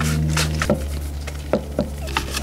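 Stiff nylon-bristled brush scrubbing the wet, soapy fork and frame of a mountain bike in a handful of separate strokes. A steady low hum runs underneath.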